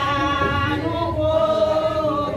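A group of voices singing a Vodou chant together, holding long notes that step from one pitch to the next.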